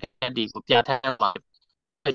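Speech only: a voice talking in short phrases, with abrupt dead-silent gaps between them.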